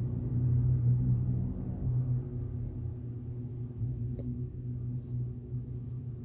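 A steady low hum, with a single short click and a brief high ring about four seconds in.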